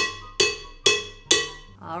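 A kitchen utensil rapped four times against the rim of a ceramic stand-mixer bowl to knock mashed potato off it, about half a second apart, each tap ringing briefly.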